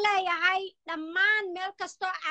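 A woman singing unaccompanied in Somali, in long held phrases with short pauses for breath.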